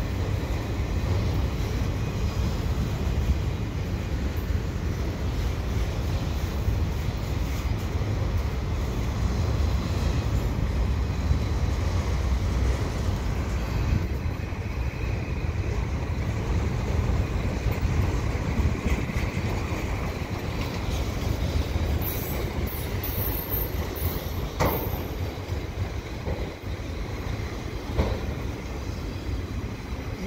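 Freight train cars, mostly autoracks, rolling past at close range: a steady rumble of steel wheels on rail, with a couple of sharp clicks late on.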